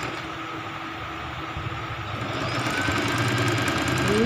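Singer electric sewing machine running steadily as it stitches a seam in the fabric, a continuous motor hum that grows louder about halfway through.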